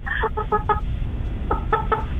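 A pet rooster clucking over a telephone line: a quick run of about four short clucks in the first second, then another run of short clucks just past the halfway point.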